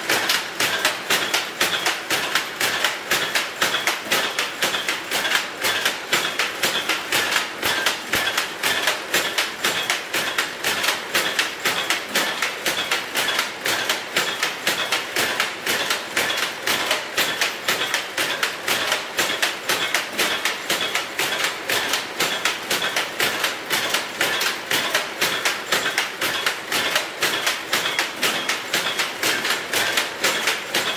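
Saurer power loom weaving: a fast, steady clatter of evenly repeated strikes.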